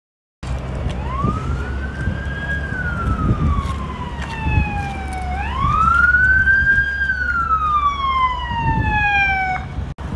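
Emergency-vehicle siren in a slow wail, rising and then falling slowly twice, about five seconds to each cycle, over a low rumble of street noise. It cuts off suddenly near the end.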